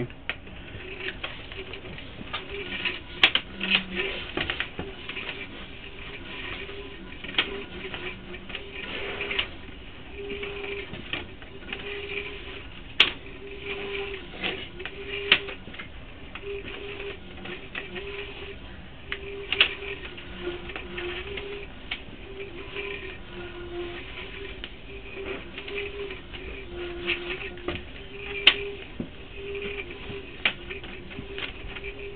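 Sewer inspection camera's push cable being pulled back through the pipe: irregular clicks and rattles with a few sharper knocks, over a low tone that comes and goes in short pulses.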